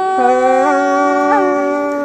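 A singing voice holding a long, steady note in Thái folk song, with two small ornamental flicks in pitch partway through.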